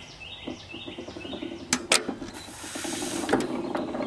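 Scattered metal clicks and clacks from hand-pumping the fuel system of a stopped Fuller & Johnson hit-and-miss engine to prime it, the loudest a sharp double click a little under two seconds in. A short hiss follows for about a second before another click.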